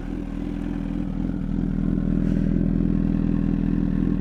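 Honda CBR1000RR's inline-four engine idling steadily with the bike parked, growing slowly louder as the microphone nears the exhaust.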